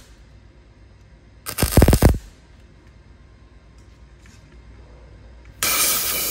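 A wire-feed welder arcing on sheet steel in one short crackling burst of under a second, about a second and a half in. Near the end a loud steady hiss starts.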